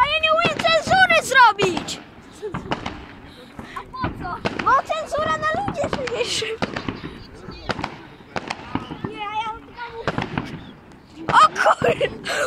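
New Year's fireworks and firecrackers going off: scattered bangs and crackling all through, with a louder cluster of bangs near the end.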